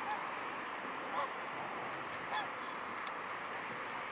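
Three short calls from waterfowl, spaced about a second apart, over a steady background hiss.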